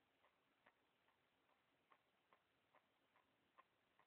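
Near silence, with faint, regular ticking at about two to three ticks a second.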